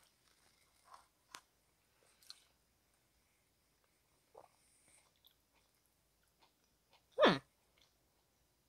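Quiet closed-mouth chewing of a mouthful of soft avocado enchilada: a few faint, sparse mouth clicks, then a short vocal sound from the eater a little past seven seconds, much louder than the chewing.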